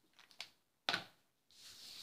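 Paper and cardstock being handled on a cutting mat: a few light clicks and rustles, a sharp tap about a second in, then a short sliding rustle as a sheet is pushed across the mat.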